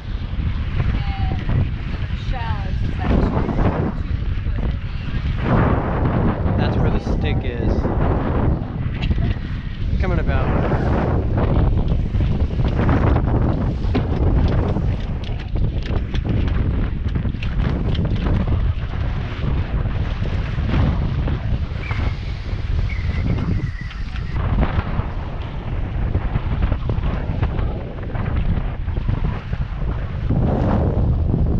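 Strong wind buffeting the microphone in a steady roar, with water rushing and splashing along the hull of a small sailboat beating upwind through chop, rising and falling in surges.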